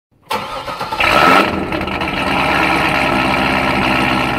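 A car engine starting, with a brief rise in revs about a second in, then idling steadily.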